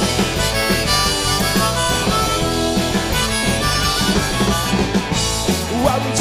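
Garage rock band playing live: electric guitars, bass guitar and drums, with a harmonica playing held notes over them during an instrumental break.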